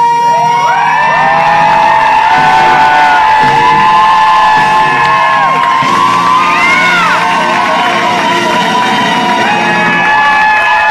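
A song's climactic long held high vocal note over backing music, while the crowd whoops, whistles and cheers over it.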